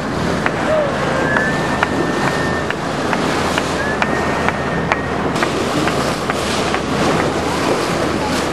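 Water rushing and splashing at a sailboat's bow under way, with wind on the microphone. Two thin, steady whistles, each about a second long, sound over it about a second in and about four seconds in.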